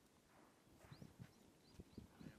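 Near silence: faint outdoor ambience with a few soft knocks.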